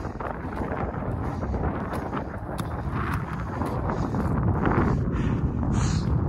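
Wind buffeting the microphone: a steady, low rumbling rush that grows a little louder partway through.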